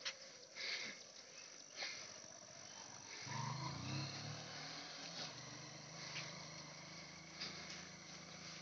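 Motorcycle engine running at a distance, faint, a low steady drone that comes up about three seconds in and holds. A few faint knocks come in the first two seconds.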